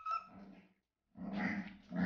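Young puppies whining and grunting: a short high whine at the start, then a longer, lower grunting call, and two louder ones back to back in the second half.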